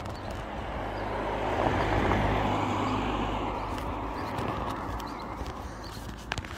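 A car passing along the street: tyre and engine noise swells over the first two seconds and fades away over the next three.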